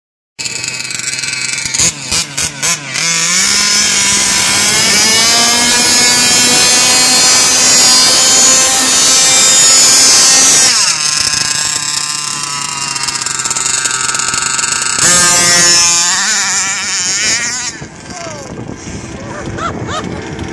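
Small two-stroke petrol engine of a quarter-scale RC drag car: a few short bursts as it catches, then revved with the pitch climbing for several seconds. It drops back near the middle, revs up again, and fades near the end.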